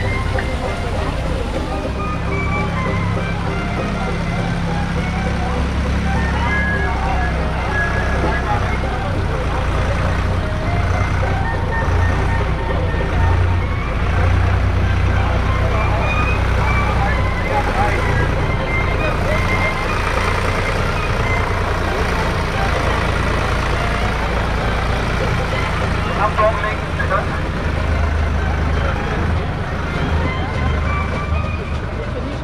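Small tractor engine running slowly at low revs, a steady low hum that shifts in pitch a few times, with a crowd talking around it.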